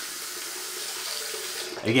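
Water running steadily from a tap as a hiss, then cut off shortly before the end.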